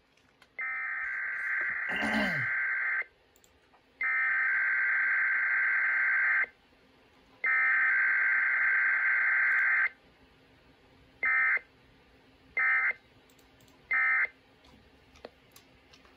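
Sage EAS ENDEC sending a Required Weekly Test. Three long bursts of SAME header data, a buzzing data warble each about two and a half seconds long with short gaps between, are followed, with no attention tone or voice message, by three short end-of-message bursts.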